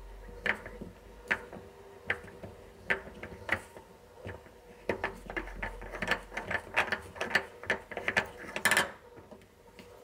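Small incandescent bulb being unscrewed by hand from the plastic socket of a Bosch refrigerator's interior light: a run of irregular clicks and scrapes from the threaded base turning in the socket. The clicks come faster about halfway through, with a louder scrape near the end as the bulb comes free.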